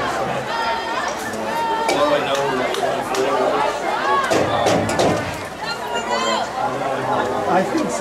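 Crowd chatter in the bleachers: many overlapping voices talking at once, with a couple of higher-pitched calls standing out.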